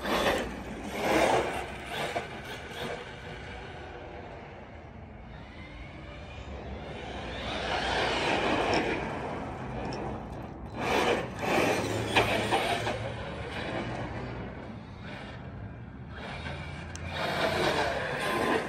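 Team Corally Kagama RC monster truck running on a 4S LiPo: brushless motor and drivetrain whine with tyre noise on asphalt, swelling in several bursts of throttle and fading between them.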